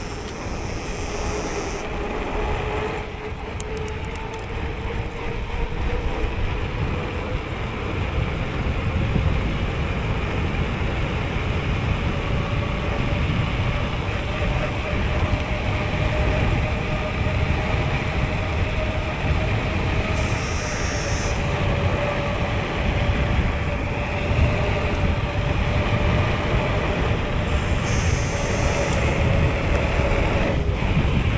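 Mountain bike rolling fast downhill on asphalt: wind rushing over the microphone with the steady roar and hum of the tyres on the road. The hum rises slightly in pitch as speed builds.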